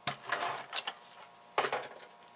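ATG adhesive transfer tape gun laying double-sided tape on a paper card layer: a sharp click, then a few short raspy bursts of the tape feeding and being pulled off.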